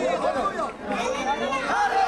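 Several voices talking over one another, a child's voice among them, with crowd chatter behind.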